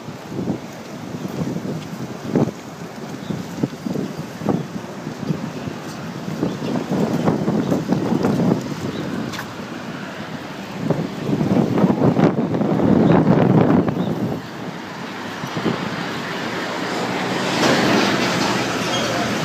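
Wind buffeting the microphone in uneven gusts, strongest a little past the middle, over the sound of city street traffic.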